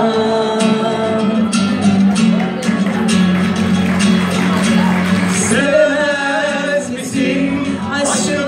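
A voice singing a slow melody over acoustic guitar accompaniment, with the reverberation of a large hall.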